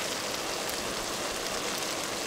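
Pan of chicken, potatoes and carrots sizzling steadily on the stove as canned tomato sauce is poured in.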